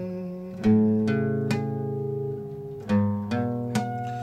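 Guitar chords plucked and left to ring, six in two groups of three, each chord about half a second after the one before.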